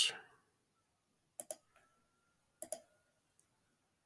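Two computer mouse clicks about a second and a quarter apart, each a quick press and release.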